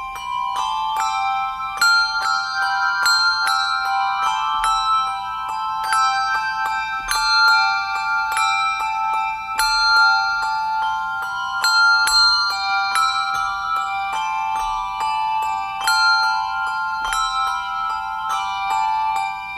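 A handbell choir playing a piece: a steady stream of struck bell notes, several ringing on and overlapping at once.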